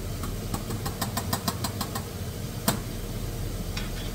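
A metal spoon clicking rapidly against a cooking pot on the stove, about a dozen quick light taps in the first two seconds, then one sharper knock, over a steady low hum.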